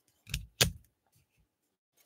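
Two quick knocks about a quarter second apart, the second the louder, from trading cards and packs being handled on a tabletop.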